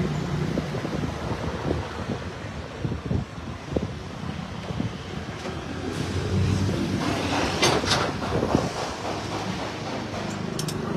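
Wind buffeting the microphone over outdoor road traffic noise, with a few sharp clicks near the end.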